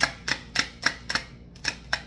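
A tarot deck shuffled by hand, packets of cards dropped from one hand onto the other, each drop a sharp card slap about three times a second, with a short break after about a second.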